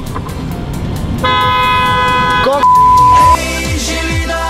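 A horn sounds one steady single-pitched note for just over a second, starting about a second in. It is followed by a loud pure beep tone like a censor bleep, lasting under a second. Music with falling bass sweeps starts near the end.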